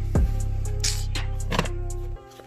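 Background music with a steady deep bass and a few drum hits.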